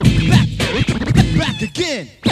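Turntable scratching: a vinyl record pushed back and forth by hand while the mixer's crossfader chops it, making quick pitch sweeps up and down over a backing beat.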